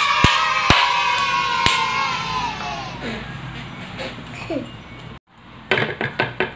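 Children cheering a long, held "yay" that slowly falls and fades over about three seconds, with a few sharp hand claps in the first two seconds. A short "yay" and a few knocks follow near the end.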